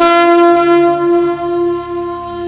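Conch shell (shankh) blown in one long, steady, loud note that starts suddenly.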